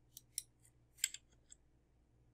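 A handful of small, sharp clicks, about six in two seconds, the loudest about a second in, over a faint, steady low hum.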